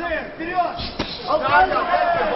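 A few thuds of kickboxing blows landing in a clinch or exchange, the sharpest about a second in, over excited voices.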